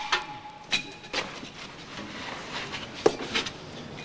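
A few short, sharp knocks and scuffs from two men grappling at close quarters over a knife.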